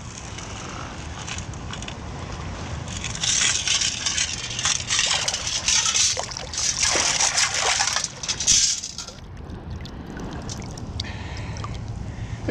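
Water sloshing and splashing as a long-handled Stavrscoop sand scoop is worked into the sandy bottom to dig out a metal detector target. The splashing is heaviest in the middle stretch and eases off near the end.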